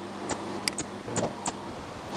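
A computer mouse clicking: about five short, sharp clicks spread over two seconds, over a faint steady hum.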